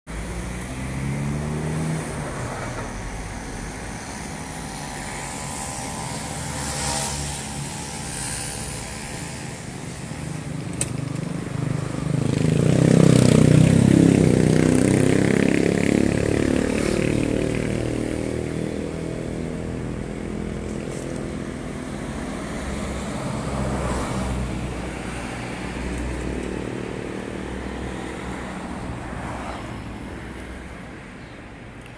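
Street traffic: motor vehicles driving past close by, engines and tyre noise rising and falling. The loudest pass comes about 12 to 16 seconds in, a heavier vehicle going by.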